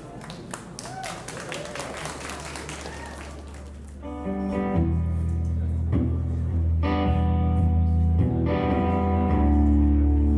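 Audience chatter and scattered claps, then about four seconds in an electric bass and an electric guitar start a slow intro of long, held notes that grows louder.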